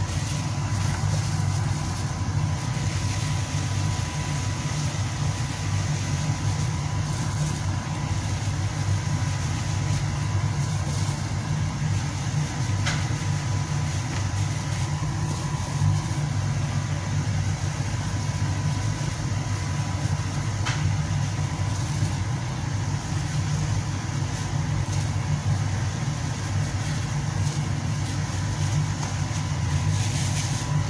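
A steady low machine hum with a thin steady high tone running through it, unchanging throughout, with a few faint ticks.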